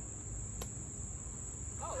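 Insects trilling steadily at one high, unbroken pitch, like summer crickets, with a single faint click about half a second in.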